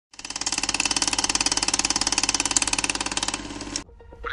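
Film projector running: a fast, even clatter of about twenty-four clicks a second that stops suddenly near the end.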